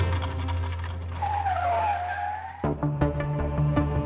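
Car tyres screech in a dipping and rising squeal over a low, held music drone. About two and a half seconds in, the drone cuts off and a rhythmic music track with a ticking beat starts suddenly.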